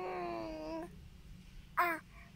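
An infant's whiny, cat-like cry: one drawn-out wail of just under a second, then after a pause one short high squeak near the end.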